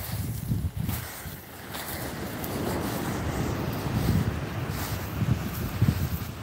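Wind buffeting the phone's microphone in uneven gusts, with the hiss of surf washing in on the shore swelling in the middle.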